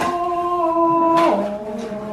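A voice singing two long held notes, the second lower, dropping about two-thirds of the way through, like a mock fanfare as a box is opened.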